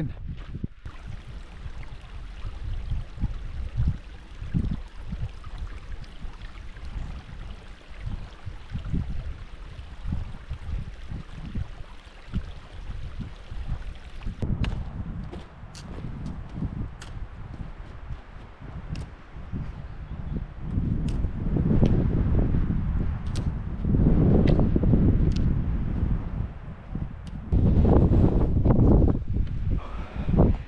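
Wind buffeting the microphone in low gusts that grow stronger in the second half. From about halfway there are short sharp ticks that fit footsteps and a trekking pole on a gravel track.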